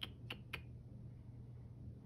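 Three quick, sharp clicks of a mechanical pencil in the first half second, a little under a third of a second apart, over a faint steady hum.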